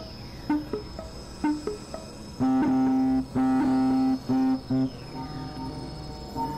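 Experimental synthesizer music. Short pitched blips come in the first two seconds, then a rhythmic run of held low notes starts about two and a half seconds in. A thin, steady high-pitched tone runs beneath it all.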